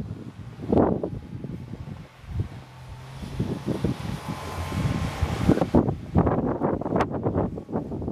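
2003 Ford Escape's V6 engine working as the SUV climbs a snowy hill in four-wheel drive, with tyres churning through the snow; the engine and snow hiss swell in the middle and drop away about six seconds in. Wind buffets the microphone throughout in gusty rumbles.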